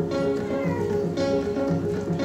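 Solo electric guitar playing an original instrumental piece: a picked melodic line of ringing notes, with one note sliding down in pitch about half a second in.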